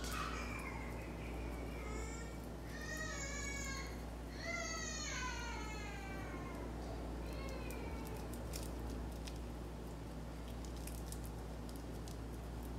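A cat meowing about five times in the first eight seconds: high, drawn-out calls that fall in pitch, the longest about two seconds, the last one faint.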